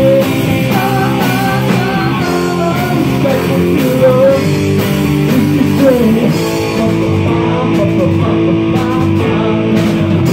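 Rock band playing live through amplifiers: electric guitars with sustained notes and string bends over drums and cymbals.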